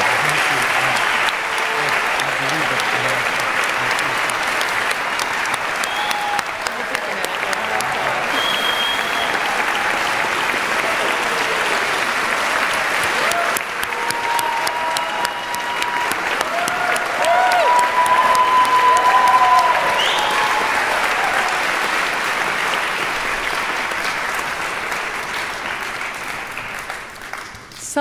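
A large audience applauding steadily, swelling to its loudest a little past the middle and dying down near the end.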